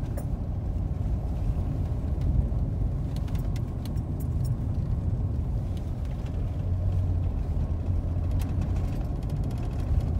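Steady low rumble of engine and road noise inside a moving sheriff's patrol car, with a few faint clicks.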